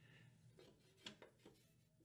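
Near silence, with a few faint clicks from hands handling the mower's metal belt guard about halfway through.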